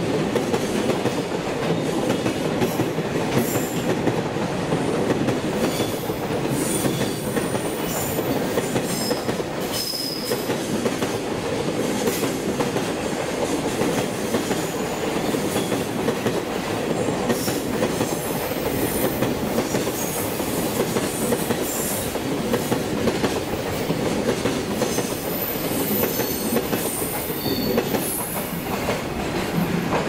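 Freight train of container flat wagons rolling past, a steady loud rumble and clatter of wheels on the rails with brief high-pitched wheel squeals scattered throughout.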